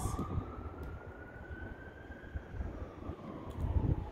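Emergency-vehicle siren wailing: one slow rise in pitch over about two seconds, then a fall, over a low rumble.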